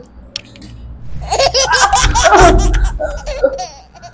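A woman laughing loudly in a rapid run of laughs that starts about a second in and lasts a little over two seconds.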